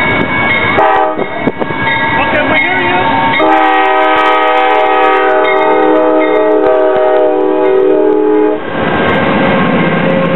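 An Amtrak passenger locomotive's multi-note air horn sounds a short toot about a second in, then one long blast of several notes held for about five seconds that cuts off. After it comes the rumble and clatter of the bilevel passenger cars rolling past.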